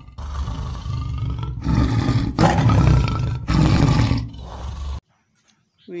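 Tiger roaring: a run of long, rough roars, loudest in the middle, that cuts off abruptly about five seconds in.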